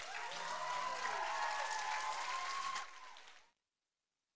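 Audience applauding, with voices cheering over the clapping; the sound cuts off suddenly about three and a half seconds in.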